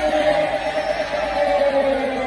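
Live electronic-pop music from a duo's stage set: a sustained chord of several mid-register notes held through, slightly wavering.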